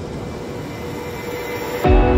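A steady rushing noise like wind that slowly swells. Music with guitar starts suddenly near the end.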